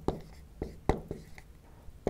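A marker pen writing on a flip-chart board: a handful of short, sharp strokes and taps as a word is written out.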